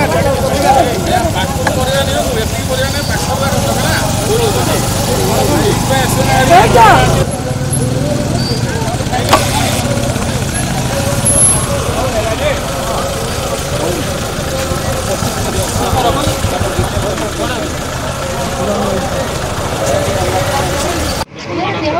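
Idling motorcycle and scooter engines with people talking over them at a roadside stop, then an SUV's engine idling as voices go on; the sound changes abruptly about seven seconds in.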